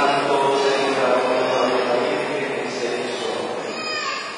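A group of voices chanting together in the church, in long held pitches, fading a little toward the end.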